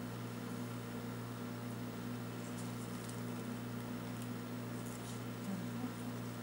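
Steady low hum of room noise, with a few faint soft rustles of a thin metallic cord being handled and knotted, about halfway through and again near the end.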